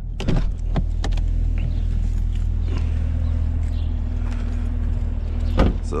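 Chevrolet Camaro ZL1's supercharged V8 idling steadily, with a few sharp clicks within the first second as the driver's door is opened and one solid thud of the door shutting near the end.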